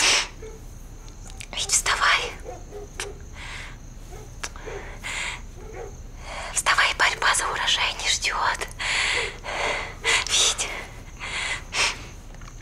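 A woman whispering close up in soft, breathy phrases: a short one about two seconds in, then a longer stretch from about halfway to near the end.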